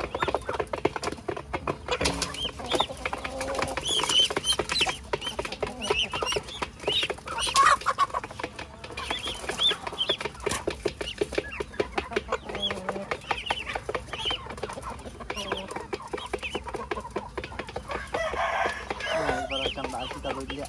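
Muscovy ducklings peeping while they and chickens peck grain from a metal basin, with rapid tapping of beaks on the metal and occasional clucking. A louder noisy flurry comes about two seconds before the end.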